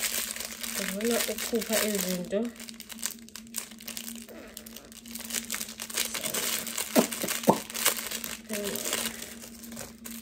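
Clear plastic packaging bag crinkling in the hands as it is unwrapped, an irregular run of crackles.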